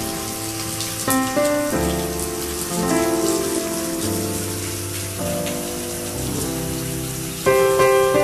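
Water pouring steadily from a bathtub faucet, filling the tub, a constant hiss under soft piano music.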